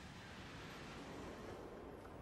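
Faint, steady rushing noise of a Transrapid maglev train passing at speed on its guideway, with no wheel or engine sound.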